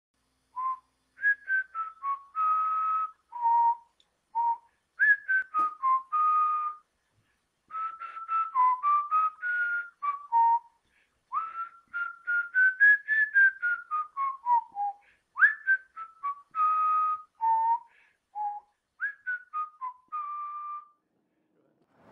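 A tune whistled in quick short notes with a few longer held ones, wandering up and down in pitch, with dead silence between phrases.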